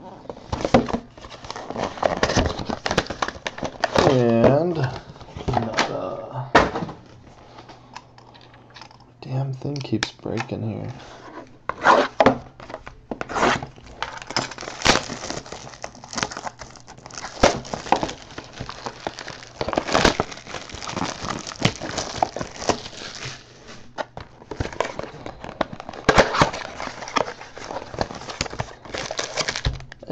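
Hands tearing open and crinkling trading-card pack wrappers and handling cardboard card boxes: an irregular run of rustles, crackles and sharp clicks, with brief humming in between.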